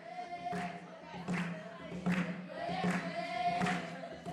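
A group of girls singing an Ashenda song together, with a sharp beat keeping time about every three-quarters of a second.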